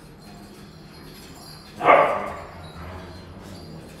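A dog barks once, sharply, about two seconds in, during play.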